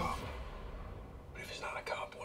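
Quiet, hushed speech close to a whisper, starting about one and a half seconds in, over a low hum.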